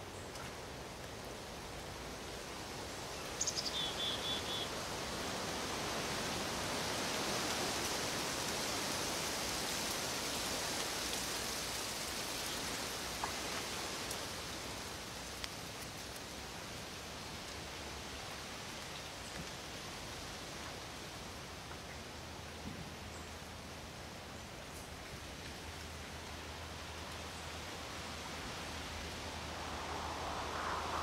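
Wind rustling through tree leaves, swelling to a peak and then easing off. A bird gives a short run of quick high chirps about three and a half seconds in.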